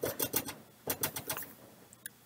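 A pet gnawing at its cage: rapid runs of small sharp clicks, one burst at the start and another about a second in.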